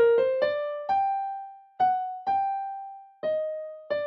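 A single-line melody played on a digital piano, one note at a time. Quick notes at first, then a few longer held notes in the middle, then quick notes again near the end.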